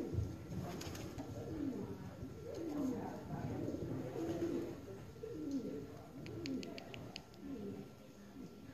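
Birds cooing, low falling calls repeated about once a second, with a short quick run of light clicks near the end.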